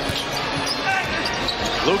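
Arena crowd noise with a basketball being dribbled on a hardwood court during live play.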